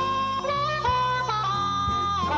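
Blues harmonica playing long held notes that bend and slide between pitches, over electric bass and drums with a few drum hits.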